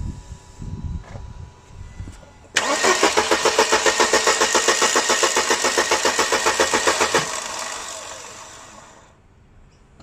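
Starter cranking the 1999 Mercedes-Benz C180's four-cylinder engine in a fast, even pulse. It begins sharply, runs for about four and a half seconds without the engine catching, and stops abruptly. The no-start is put down to a crankshaft position sensor fault (P0335).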